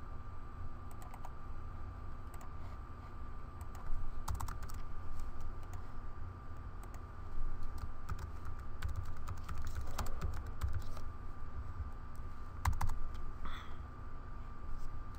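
Computer keyboard typing in short, irregular bursts of keystrokes, over a steady faint background hum.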